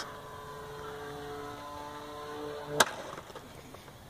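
Electric motor and propeller of a foam RC model plane (FT Duster) humming steadily in flight. About three-quarters of the way in there is one sharp click, and the hum stops.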